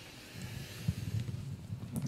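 Low rumble and soft irregular bumps of a handheld camera being picked up and carried: handling noise on the microphone.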